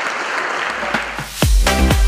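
Audience applauding. About 1.4 s in, electronic dance music with a heavy bass beat starts and takes over.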